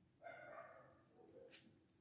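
Near silence: room tone, with one faint, brief pitched sound lasting well under a second near the start.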